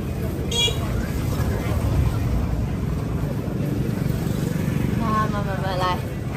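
Crowd of people at an outdoor market: voices in the background over a steady low rumble, with someone speaking near the end.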